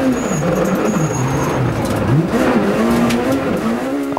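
Renault Clio Super 1600 rally car engine heard from inside the cockpit at full stage pace. The revs drop over the first second and a half, then climb again from about two seconds in, as the car brakes into a corner and accelerates out.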